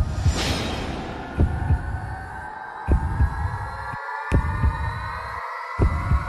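Suspense background score. A deep double thump like a heartbeat repeats about every one and a half seconds over a sustained drone that slowly rises in pitch, opening with a whoosh.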